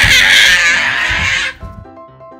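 A child's loud, drawn-out excited scream over background music. The scream cuts off suddenly about one and a half seconds in, leaving the music playing softly.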